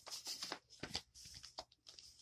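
Faint rustling and crinkling of paper as a greeting card is pulled out of a cut-open envelope: a run of short, irregular crackles, thicker in the first second.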